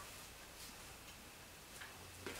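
Near silence: faint room tone in a pause between spoken passages, with a faint click near the end.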